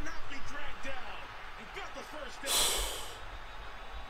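Faint male commentary from the football broadcast being played back. A short, breathy burst of noise comes about two and a half seconds in.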